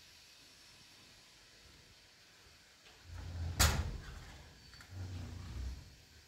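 An interior door being opened: one sharp latch click about three and a half seconds in, with low thuds of handling before and after it.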